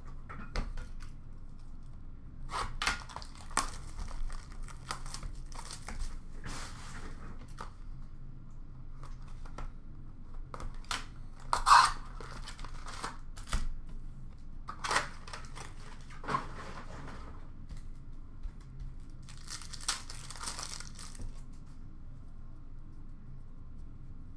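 Trading card packs being torn open by hand and their wrappers crinkled, in short, irregular rips and rustles with a sharper rip about halfway through.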